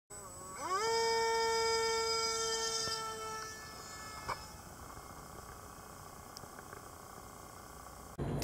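A small unmanned aircraft's motor spinning up with a rising whine, then holding a steady high pitch for a few seconds before fading away. A single sharp click comes a little after four seconds in.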